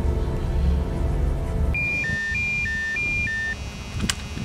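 Mobile phone ringing with a two-tone trill: three pairs of alternating high and low beeps, starting a little under two seconds in, over a low background music bed.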